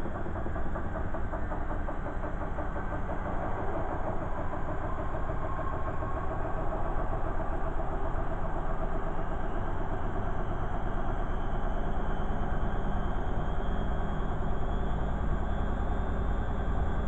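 Beko front-loading washing machine turning its drum: a continuous motor hum and rumble that swells within the first second, with a faint rising whine in the last few seconds as the drum speeds up.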